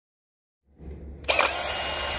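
Cordless drill with a bi-metal hole saw fitted, run briefly and spinning freely in the air, starting suddenly about halfway in and holding steady speed.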